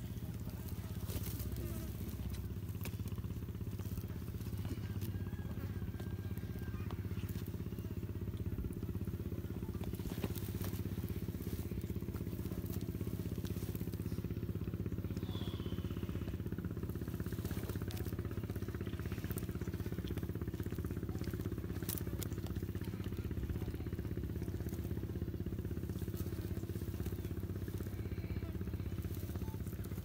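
Komodo dragons tearing at a goat carcass: scattered cracks and crunches of flesh and bone being torn, over a steady low hum.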